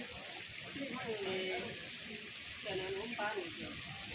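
People talking in the background, with a short murmur about a second in and another near three seconds, over a steady hiss.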